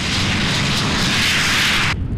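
An oil well fire burning: a loud, steady, jet-like rush of flame.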